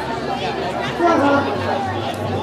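Background chatter: people talking over one another, with one voice louder about a second in.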